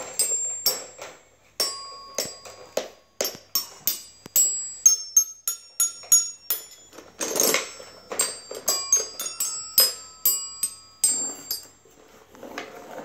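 Toy xylophone with colored metal bars struck with a mallet: single notes tapped irregularly, about two a second, each ringing briefly. One short, louder, noisier sound comes about seven seconds in.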